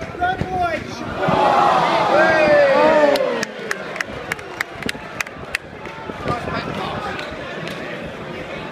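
Football crowd chanting, many voices together in a loud rising and falling shout. This breaks into rhythmic hand clapping, about three claps a second, that stops a little over halfway through, leaving general crowd noise.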